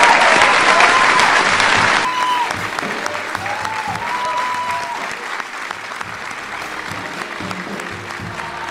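A large crowd applauding, loudest for the first two seconds and then dropping and fading away.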